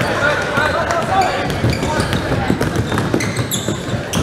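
Basketball game play in a gym: a ball dribbled on the hardwood floor and players' sneakers squeaking, with the voices of players and spectators echoing in the hall. A sharper cluster of squeaks comes about three and a half seconds in.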